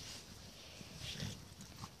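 A Labrador–American Bulldog cross breathing and snuffling faintly while carrying a ball in her mouth across grass.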